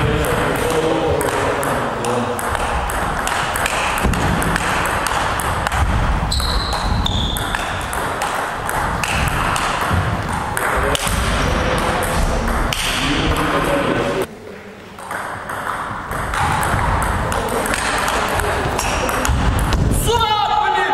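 Table tennis rally: the ball clicking rapidly back and forth off the paddles and the table, stroke after stroke, with a brief lull about three-quarters of the way through.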